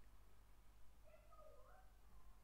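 Near silence: room tone with a steady low electrical hum. About a second in, a faint, short pitched call rises and falls in steps and lasts about a second.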